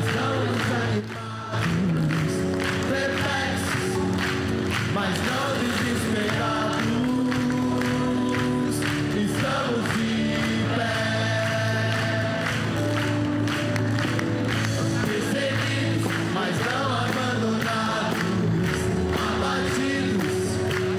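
Large choir singing a Portuguese-language gospel song over a band with a steady beat, the sound dipping briefly about a second in.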